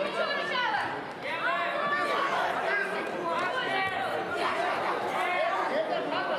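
Several voices shouting and talking over one another in a large sports hall, as coaches and onlookers do during a judo ground fight.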